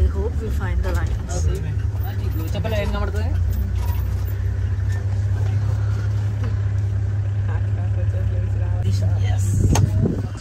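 Safari vehicle driving, its engine and road noise a steady low rumble, with voices talking briefly over it. A few sharp knocks come near the end.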